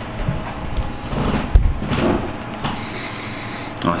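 Handling noise: a few low thumps and rustles, the loudest about one and a half seconds in, as a full pint glass is set down on a rubber bar mat and the camera is moved.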